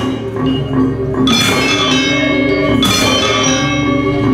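Live Sasak gamelan ensemble playing dance accompaniment: bronze metallophones ringing a held, interlocking melody over drums, with bright sharp strikes about every second and a half.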